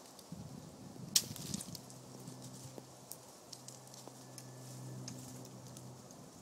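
Handling noise of a phone camera held up in a tree: scattered clicks and rustles, with one sharp click about a second in. A faint steady low hum runs under the second half.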